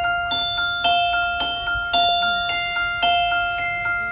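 Background music: a bell-like mallet-percussion melody, notes struck about twice a second and left ringing.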